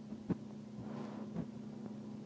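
A steady low hum with two faint short clicks, one near the start and one about a second and a half in.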